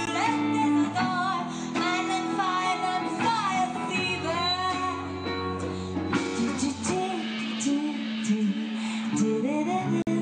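Live hard rock band: a female lead vocalist singing into a handheld microphone over electric guitar, bass guitar and drums. The singing is strongest in the first half, with the band carrying on beneath.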